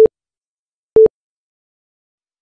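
Quiz countdown timer beeping: two short, identical electronic beeps a second apart as the clock ticks down its final seconds.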